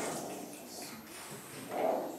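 A child's soft, wordless voice sounds twice: briefly at the start and again, louder, near the end.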